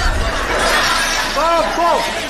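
Glass shattering and crashing in a loud, continuous commotion, with shouting voices near the end.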